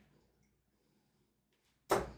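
A single steel-tip Caliburn Matrix 95% tungsten dart striking the dartboard near the end, one sharp thud, after near silence.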